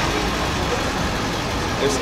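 City bus running close by, a steady engine and street-traffic rumble.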